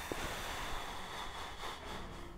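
Film trailer sound effect: a rushing, hissing noise with a faint high tone running through it, slowly fading.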